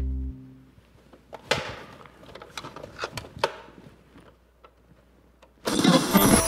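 A held low note of music fades out, then a few quiet seconds broken by scattered light clicks and knocks. About half a second before the end, loud pop music starts abruptly, played on a portable cassette player held up as a wake-up alarm.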